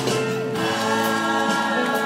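Live rock band with several voices singing close harmony in long held notes over guitars and keyboard, heard from the audience in a large hall.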